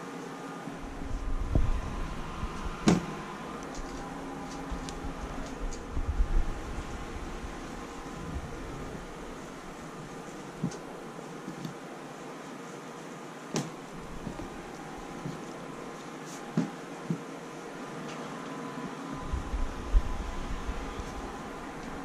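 Handling noises from cleaning out a wire-grid guinea pig cage: fleece liners and hay being moved about, with scattered sharp clicks and low knocks, over a steady background hum.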